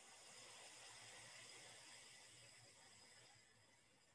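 A faint, slow exhale through one nostril during alternate-nostril breathing (nadi shodhana): a soft airy hiss that swells, then slowly fades away.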